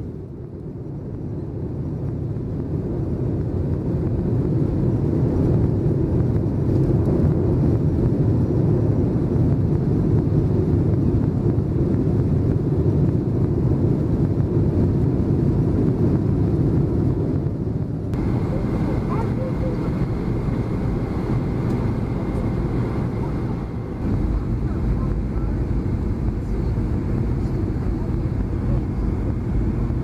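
Airliner cabin noise in flight: a steady low rush of engines and airflow. About 18 s in the sound changes and a faint steady high whine joins; around 24 s the low rumble grows heavier.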